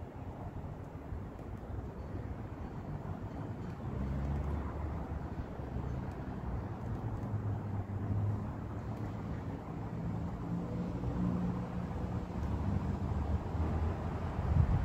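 A distant engine's low hum, growing louder about four seconds in and then holding steady.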